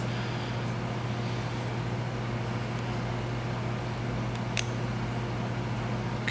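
Steady background hum over a constant hiss, with one short sharp click about four and a half seconds in as small plastic case parts are handled on a desk.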